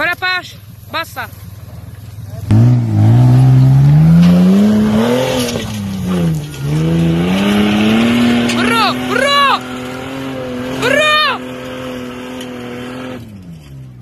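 Toyota Land Cruiser engine revving hard under load as it climbs a dirt hill. Its pitch rises, dips briefly, then climbs again and holds high before fading away near the end. Short shouts from onlookers come a few times.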